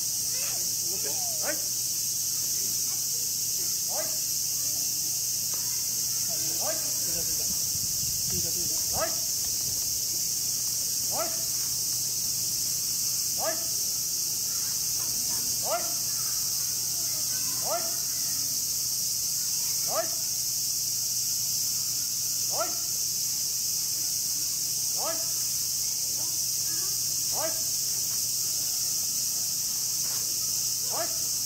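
Steady high-pitched chorus of summer cicadas, with short rising chirps about every two seconds over it.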